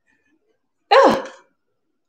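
A woman sneezing once, about a second in: a single short, loud burst with a falling voiced tail.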